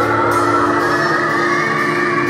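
Live rock band playing, the electric guitar holding sustained notes with a slow rising pitch glide while the drumming largely drops out.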